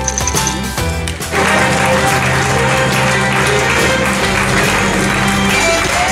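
Background music with steady low tones. From about a second in, the sound grows louder and fuller, with a dense hiss of crowd applause mixed under the music.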